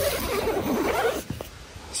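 Tent door zipper and nylon fabric being handled as the door of a Gazelle T3X hub tent is pulled open. After about a second it goes quieter, with a couple of light clicks.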